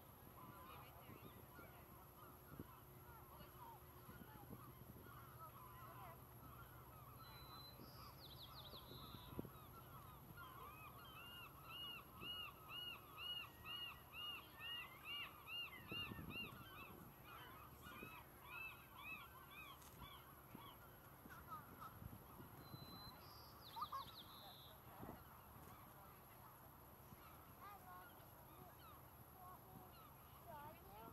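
Faint bird calls: a run of about a dozen rising-and-falling notes, about two a second, starting about eleven seconds in, with scattered fainter calls around it and two brief high trills.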